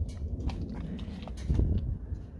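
Wind rumbling on the microphone, swelling to a stronger gust about one and a half seconds in, with a few light scattered clicks.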